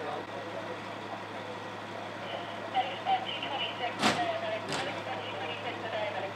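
Indistinct voices over the steady low hum of an idling vehicle engine, with two sharp knocks about half a second apart, about four seconds in.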